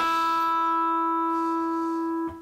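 The open high E string of an electric guitar ringing as one sustained note, fading slowly. It was plucked to check its tuning against the onboard tuner.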